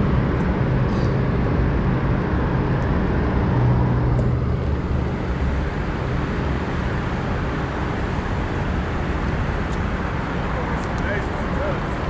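Steady road traffic noise, with a low engine hum that grows louder briefly about four seconds in.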